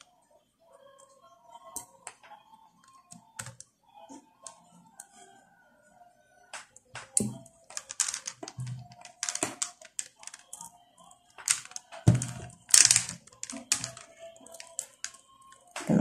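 Faux pearl beads clicking and clattering against one another as the beadwork is handled and threaded, in irregular bursts that grow busier and louder in the second half.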